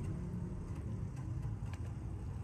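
Low steady background hum with a few faint, scattered ticks.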